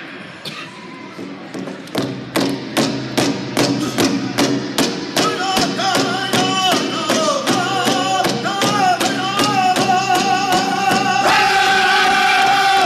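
Powwow drum group: several men beating one large shared drum with sticks in a steady, even beat that starts softly and grows louder. Men's singing joins about halfway through, and a loud, high-pitched lead voice comes in near the end.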